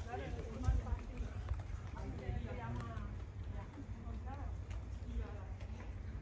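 Voices of people talking, faint and unintelligible, over a steady low rumble of wind on the microphone, with a few light knocks scattered through.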